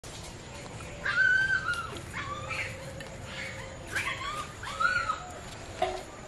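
A little dog whimpering and yelping in about five high, pitched calls that each rise and fall, the first and longest starting about a second in.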